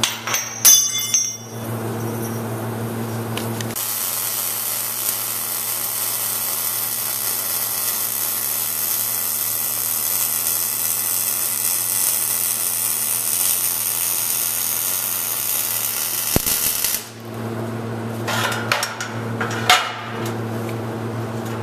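MIG welding arc crackling steadily for about thirteen seconds while a steel suspension bracket is welded to a truck frame. It is framed by sharp metallic clinks of parts being handled, a few in the first second or so and more near the end.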